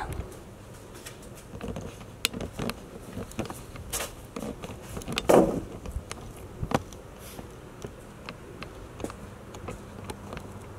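Scattered light clicks and knocks of someone handling parts around a metal toolbox, with one louder, longer knock-and-creak about five seconds in, over a faint steady background.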